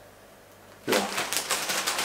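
Plastic bag of potato chips crinkling and crackling as it is handled and set down. The crinkling starts suddenly about a second in, after a quiet moment.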